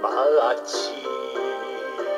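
A man singing a Japanese kayōkyoku ballad over a karaoke backing track. The sung phrase ends about half a second in, and the backing instruments carry on with held notes.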